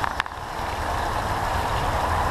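Steady rushing outdoor background noise with a low rumble, and two brief clicks just after the start.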